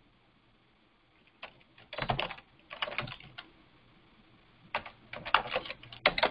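Keystrokes on a computer keyboard in a few short clusters of clicks, typing a word into a search box.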